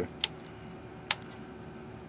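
Two sharp clicks about a second apart from an oscilloscope's rotary volts-per-division switch being turned through its detents, over a faint steady hum.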